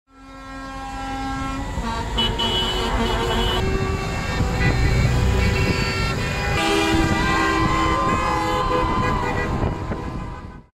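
Several vehicle horns honking over one another amid passing highway traffic, with engine and tyre rumble loudest about halfway through. The sound fades in at the start.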